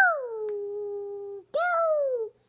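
A toddler's high voice making long falling 'weee' calls, the race-car noise she makes for her pickle pieces. One call drops in pitch and holds for over a second, and a second falling call starts about a second and a half in.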